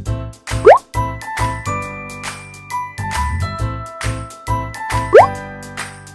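Upbeat, playful background music with a steady beat and a tinkling, bell-like melody. A quick rising "bloop" slide sounds twice, about a second in and again near the end.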